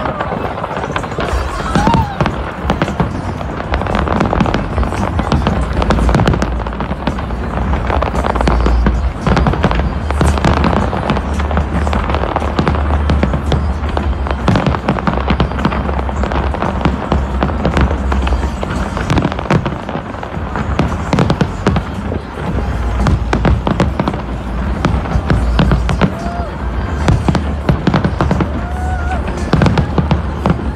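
Large fireworks display going off without pause: rapid crackling and popping over repeated deep booms.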